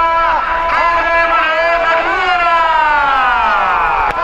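A man's voice calling in long drawn-out notes, held level at first and then sliding slowly downward over about the last two seconds.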